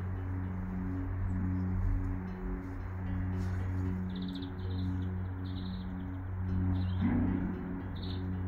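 Soft ambient background music: a steady low drone under a slowly repeating pattern of chime-like tones. Small birds chirp in short bursts from about halfway through.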